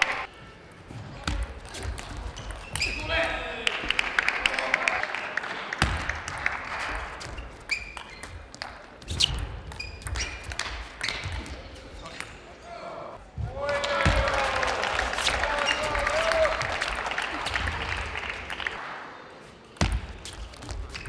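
Table tennis ball clicking sharply off bats and table in quick rallies, with spectators' voices and cheering rising about three seconds in and again around fourteen seconds in.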